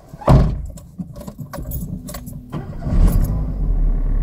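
Renault Clio started with the ignition key: the keys hanging from the ignition jangle and the engine fires with a loud start about a third of a second in, then idles steadily. It gets louder from about three seconds in.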